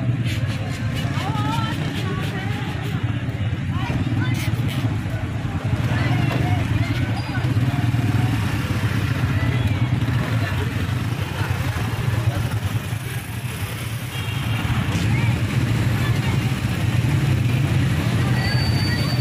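Busy street traffic: motorcycle, rickshaw and car engines running in a steady low rumble, mixed with the voices of people passing by.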